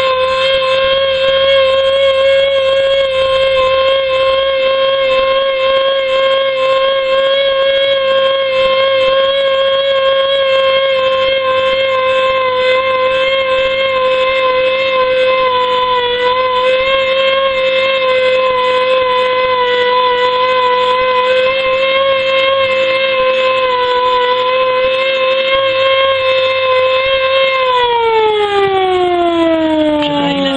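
Portable fire pump engine running flat out with a loud, steady high whine while it feeds the hose lines. The pitch dips slightly twice, then falls steadily over the last few seconds as the engine slows.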